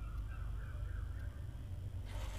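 Pen writing on paper: faint, uneven scratching strokes as a word is written out, over a steady low hum.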